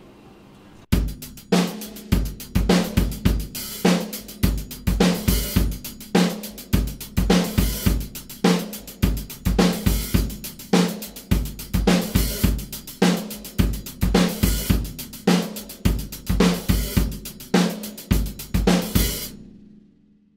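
Drum kit playing a disco chorus groove: steady 16th notes on the hi-hat with snare backbeats and bass drum, the hi-hat opening once a bar. It starts about a second in and stops cleanly near the end; the first hi-hat opening is slightly off, by the drummer's own account.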